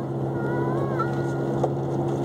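Steady hum of a running car heard from inside the cabin, with a toddler's faint high-pitched vocalizing from the back seat around the middle.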